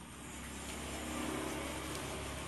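A steady engine-like rumble with hiss, probably a motor vehicle running nearby. It grows louder over the first second and then holds steady.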